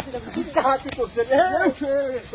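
Voices calling out, with no clear words, over a steady hiss from dry grass burning.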